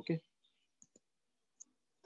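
A spoken "okay" at the start, then a near-silent pause broken by three faint, short clicks: two close together about a second in and one a little later.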